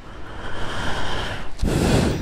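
Breath right on a small clip-on microphone held against the lips: a soft, long exhale, then a louder puff of air hitting the mic near the end.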